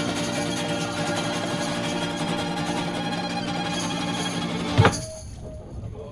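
Acoustic band of violin, acoustic guitar and tambourine playing a lively instrumental passage. Nearly five seconds in, the music stops on one loud, sharp accent and drops away.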